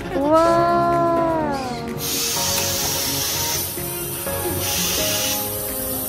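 A person's long drawn-out exclamation in the first two seconds, its pitch rising, holding and then sliding down, over background music. Two short bursts of hiss come later.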